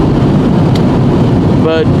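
Steady road noise inside a moving car's cabin at highway speed, a dense rumble with no clear pitch. A man's voice starts near the end.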